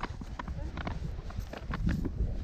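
Wind rumbling on the camera microphone of a tandem paraglider, with irregular sharp clicks and knocks scattered through it.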